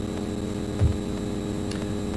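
Steady electrical mains hum in the meeting's sound system, with one brief low thump a little before a second in.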